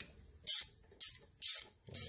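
Hand ratchet clicking in three short bursts, about half a second apart, as connecting-rod bolts on a VW flat-four crankshaft are turned.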